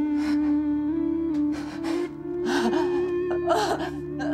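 A woman sobbing, with repeated gasping breaths and, from about halfway through, wavering crying sounds, over a soft sustained music score.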